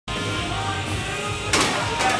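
Background music playing steadily, with a brief loud burst of noise about one and a half seconds in.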